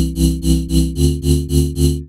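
Future bass drop-chord synth: a square-wave chord layer and a noise layer from two instances of Serum, played as short rhythmic stabs about three a second through multiband tape saturation. The chord changes about halfway through.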